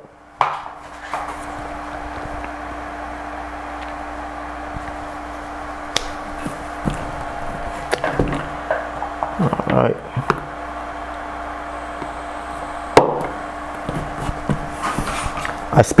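Scattered clicks and knocks from a bicycle pump's head and an inflation needle being fitted to a basketball, over a steady hum.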